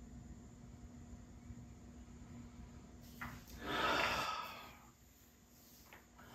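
A person's long audible exhale, starting about three and a half seconds in and fading over about a second, on coming out of a seated yoga shoulder stretch; a faint click just before it and a low steady hum underneath.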